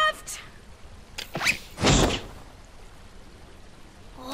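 Cartoon sound effects: a brief rising squeak, then a single dull thunk about two seconds in.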